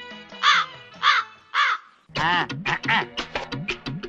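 Three crow caws about half a second apart, then upbeat music with quick percussion strokes starting about two seconds in.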